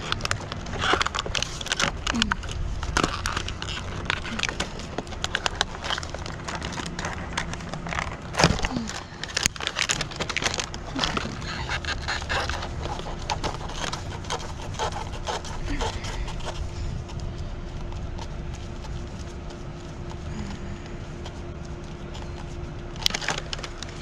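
Cardboard box of a curtain rod being opened and handled with gloved hands: many quick scrapes, taps and crackles, busiest in the first two-thirds and sparser near the end, over a steady low hum.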